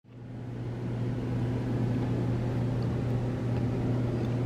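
A steady low mechanical hum that fades in over the first second and then holds level.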